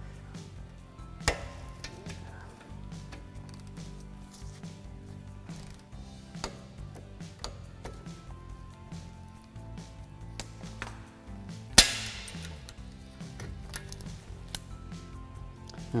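Torque wrench with a 14 mm socket tightening a brake caliper bolt, giving scattered light metal clicks and one sharp, loud click about twelve seconds in, the sign that the wrench has reached its set torque of 20 foot-pounds. Soft background music plays underneath.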